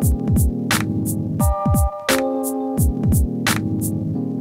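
An instrumental electronic beat played live from a sampler, looping about every two seconds: deep kick drums that drop in pitch, sharp snare and hi-hat hits, and held synth chords. The drums cut out at the very end, leaving the chord ringing and fading.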